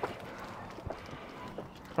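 Faint footsteps on a paved pavement, a few soft taps about a second in and shortly after, over quiet outdoor background.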